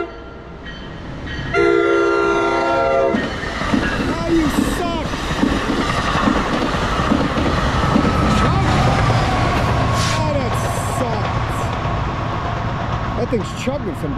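New Jersey Transit passenger train sounding one short horn blast of about a second and a half, then passing close with wheel rumble and clicking over the rail joints, a steady tone from the train slowly falling in pitch as it goes by.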